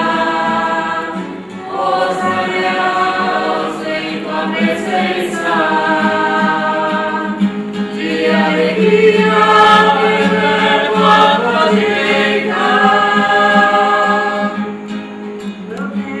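Voices singing a slow psalm chant of the Neocatechumenal Way in long held phrases, with acoustic guitar accompaniment.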